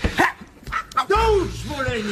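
A man crying out and whimpering, high wavering wordless cries of pain and fear, with a heavy thud of a blow about a second in: a fight in which he is being beaten.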